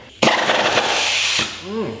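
Pneumatic wrench on an air hose running in one burst of just over a second, driving a bolt into the Mustang's rear subframe. It starts abruptly just after the start and cuts off suddenly.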